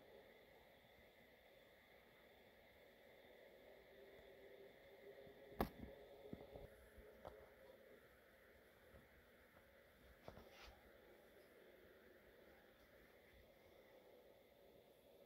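Near silence: faint room tone with a steady hum. There is one sharp click about five and a half seconds in, and a few fainter clicks after it.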